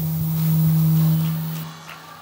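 A man's voice holding one steady low note into a handheld microphone, mid-phrase in a sing-song greeting; it swells and then fades out near the end.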